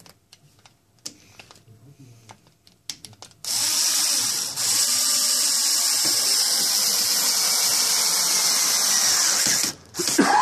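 A few light handling clicks, then an electric drill runs steadily for about six seconds, with a short break about a second after it starts, driving a screw through a rubber recoil pad into a wooden shotgun stock.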